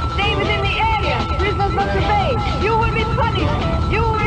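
Dramatic soundtrack music and effects: a held high electronic tone over a low steady rumble, with many short rising-and-falling pitched sounds.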